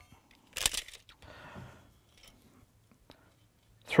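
Retractable tape measure blade being pulled out of its case: a short sharp rasp about half a second in, then a softer sliding scrape lasting about a second.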